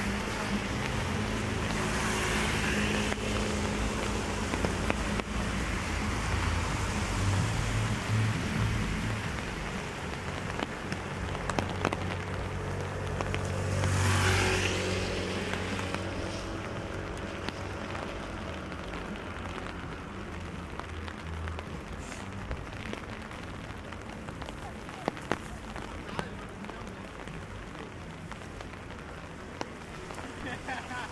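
Steady rain on wet city pavement with street traffic, low engine rumble in the first half. A motor vehicle passes close, swelling and fading about halfway through, and a few sharp clicks come later.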